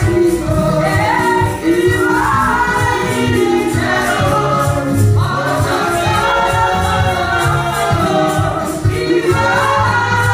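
Gospel choir singing with band accompaniment: held bass notes under the voices and a steady percussive beat.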